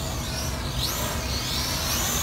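The small brushed coreless motors and propellers of an Eachine E38 quadcopter whine at a distance, the pitch rising and falling as it climbs and descends, over a steady low rumble.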